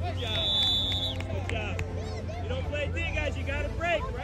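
A referee's whistle blown once, a steady high tone lasting about a second near the start, followed by overlapping chatter and shouts from children and adults on the sideline.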